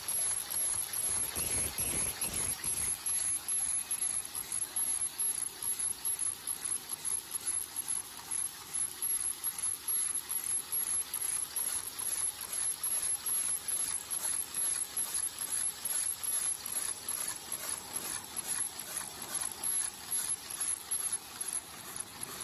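High-speed paper cup forming machine running: a fast, even clatter of mechanical clicks from its turret and forming stations, with a steady high-pitched whine over it. About two seconds in, a louder low rumble swells briefly.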